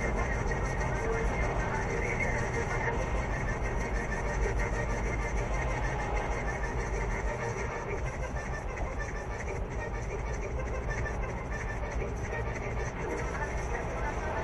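Car road and tyre noise heard from inside the cabin at highway speed, a steady rumble that eases and drops in level as the car slows from motorway speed in the second half.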